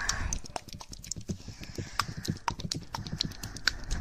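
Light, irregular tapping and clicking of close-miked ASMR trigger objects, several sharp clicks a second.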